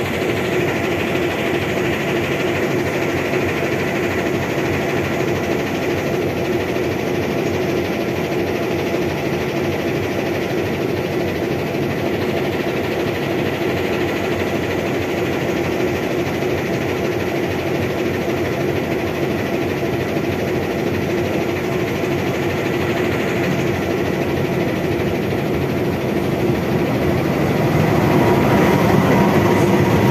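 Diesel-electric locomotive running with a steady engine hum, growing louder near the end as it draws slowly alongside the platform.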